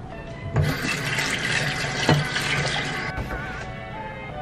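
Water running from a kitchen tap in a strong rush that starts about half a second in and shuts off suddenly at about three seconds, with background music underneath.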